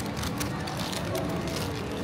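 Food court background noise: a steady hum of voices and machinery with indistinct chatter, and a few faint clicks about half a second in.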